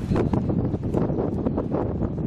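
Wind buffeting an outdoor camera microphone: a steady, dense low rumble.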